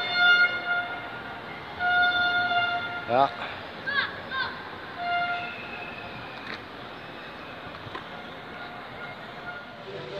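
A horn sounding a steady single note in three separate blasts, a short one at the start, a longer one of about a second at two seconds in, and a short one at five seconds in.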